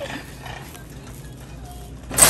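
Wire shopping cart rolling over a hard store floor, its wheels giving a rapid, steady rattling clatter; it is a stiff cart, hard to push.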